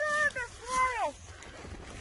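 A child's high-pitched voice calling out twice in short, gliding exclamations within the first second, then quiet.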